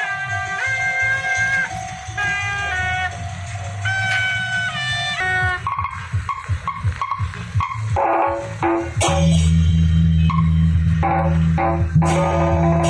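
Temple procession music: a shrill double-reed horn (suona) melody with held notes stepping from one to the next, giving way about six seconds in to clashing percussion strikes. A loud low rumble joins about nine seconds in.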